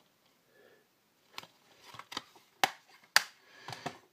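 Plastic Blu-ray cases being handled, giving a series of sharp clicks and clacks, the loudest about three seconds in.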